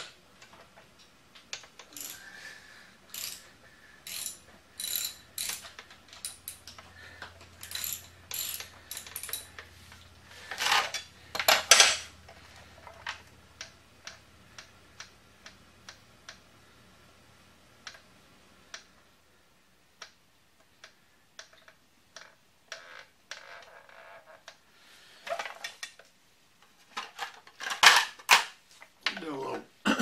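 Hand ratchet clicking in short runs as bolts on a motorcycle's front fork are turned, with metal tool clinks in between. A few louder clattering knocks come around the middle and again near the end.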